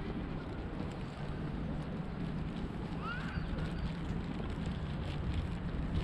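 Wind on the microphone, a steady low rumbling haze, with a short high chirp about three seconds in.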